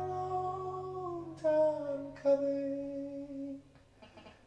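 A man singing long held notes that slide down in pitch about a second in, over a sustained hollow-body archtop guitar chord. The last note is held, and the song fades out shortly before the end.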